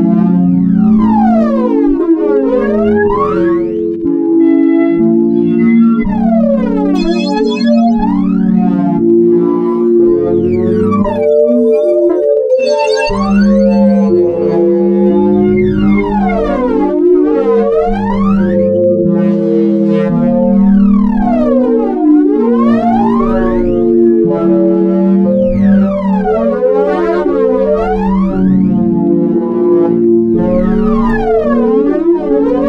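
Ambient experimental synthesizer music: layered sustained low tones under repeated sweeping glides that fall and rise in pitch every two to three seconds.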